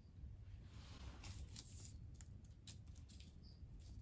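Near silence with a low steady rumble. Faint light ticks and rustles come between about one and three seconds in, from hands working soil in cardboard seed tubes in a plastic tray.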